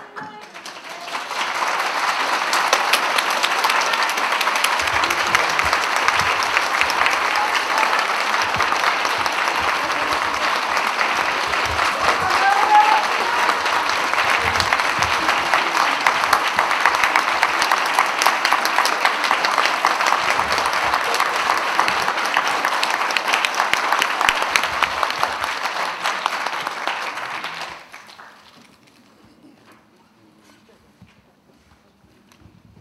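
A roomful of people applauding steadily for nearly half a minute. The applause swells in over the first second or two and stops fairly suddenly about two seconds before the end.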